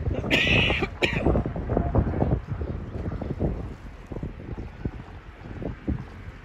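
Wind buffeting the microphone in uneven gusts, with a brief high-pitched sound near the start.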